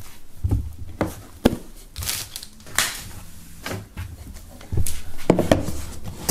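Hands handling a cardboard box and CD packaging: scattered light knocks and short rustling scrapes.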